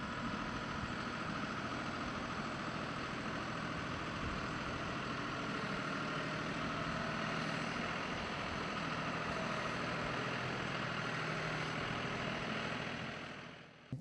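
Tractor engine running steadily while its front-end loader carries a bucket of soil, fading out near the end.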